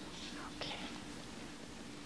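Faint breathy sounds of an elderly man sipping from a glass and breathing, two short ones about half a second apart, over a low steady hum.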